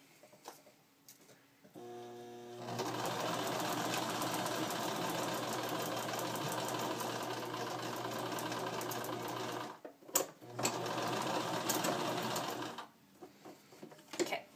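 Electric home sewing machine stitching a sheet of paper. It starts up about two seconds in, runs steadily, pauses briefly with a few clicks about ten seconds in, runs again and stops about a second before the end.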